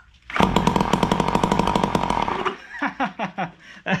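Ryobi SS30 string trimmer's two-stroke engine, run without its muffler on a shot of premix poured into the cylinder, fires and runs in a rapid, loud bark for about two seconds, then dies out. It shows the freed piston has enough compression to run.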